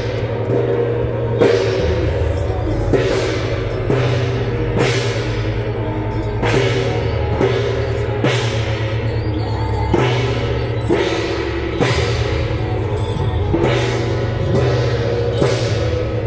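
Large hand-held gong struck in a slow, even beat, about one stroke a second, each stroke ringing on into the next. It is the beat of a Guan Jiang Shou temple troupe's dance.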